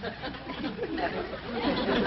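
Sitcom laugh track: a crowd murmuring and chuckling, swelling louder toward the end into fuller laughter.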